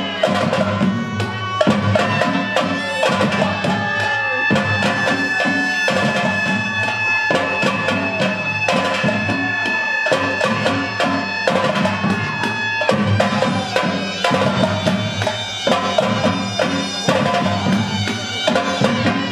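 Traditional Gilgit-Baltistan folk dance music: steady drumming under a reedy wind instrument that holds long notes of the melody.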